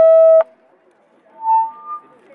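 Megaphone feedback squeal: a loud steady tone that cuts off suddenly with a click about half a second in. Near the end come two shorter, quieter tones, the second higher than the first.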